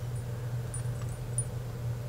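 A few faint clinks from the links and charms of a metal chain belt as it is held up and moved by hand, over a steady low hum.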